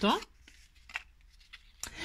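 Faint rustling and a few light clicks of stiff cardboard from a flattened toilet-paper roll being handled and folded between the fingers, with a sharper click near the end.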